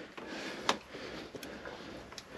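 Quiet room tone with a sharp small click about two-thirds of a second in and a fainter click a little later.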